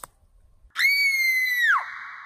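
A high-pitched human scream, starting about a second in and held steady for about a second before its pitch drops away at the end, with a thin tone lingering after it.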